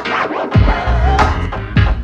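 Electronic hip-hop style beat played live on a finger-drummed pad controller, with scratch-like sounds. The bass cuts out for about half a second at the start, then the beat drops back in.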